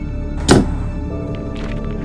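One sharp thunk about half a second in, a baseball bat set down against a wooden door frame, over a dark horror-film score of droning held notes. A new higher note enters in the score about a second in.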